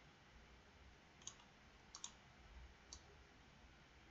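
Three faint computer mouse clicks, about a second apart, against near silence.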